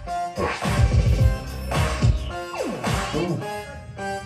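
Music with heavy, uneven bass hits and a falling, sliding sound effect about two and a half seconds in.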